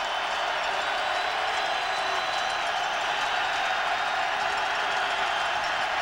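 Steady noise of a large stadium crowd, heard through a television broadcast.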